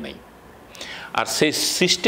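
A man speaking: a pause of about a second, then his speech resumes, with a sharp hissing sound partway through.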